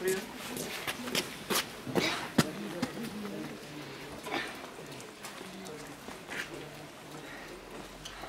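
Indistinct talking from people close by, with scattered sharp clicks and knocks, two of them louder about a second and a half and two and a half seconds in.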